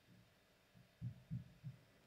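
Near silence with a few soft, low thumps, three of them close together about a second in.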